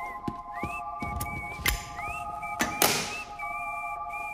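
Film trailer soundtrack: a whistled melody with upward swoops over a held, sustained chord. There are a few soft knocks and a short noisy swish a little before three seconds in.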